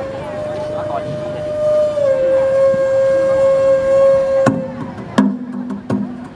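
A wind instrument holds one long, steady note that drops slightly in pitch about two seconds in and ends about four and a half seconds in. Near the end, sharp percussive strikes begin, about one every 0.7 s, over a low sustained tone.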